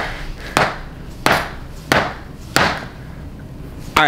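A mallet striking a man's hips and lower back as a chiropractor works to hammer the hips back into place: five sharp thuds about two-thirds of a second apart, then stopping a little past halfway.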